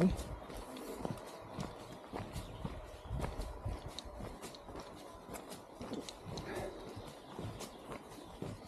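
Footsteps on a dirt forest trail: irregular soft steps and light knocks, with occasional bumps from the camera being handled.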